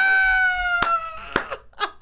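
A man's high-pitched, drawn-out laughing squeal, held for over a second and sliding slightly down in pitch, then breaking into short gasps of laughter near the end. Two sharp knocks come during the laugh.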